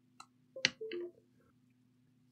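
Two brief clicks, about a quarter and two-thirds of a second in, with faint rattling as a BIOS programmer's chip clip and ribbon cable are handled, over a faint steady hum.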